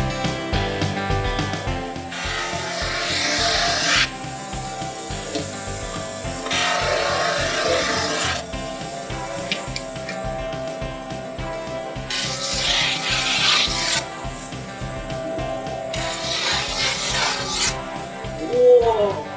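Snowboard edge being ground on an abrasive edge-grinding machine, in four passes of about two seconds each. Background music with a steady beat plays underneath.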